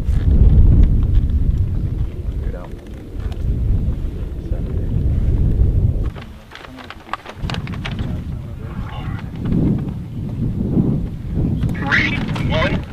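Wind buffeting the microphone in low, rumbling gusts. It drops off abruptly about six seconds in and picks up again a second later.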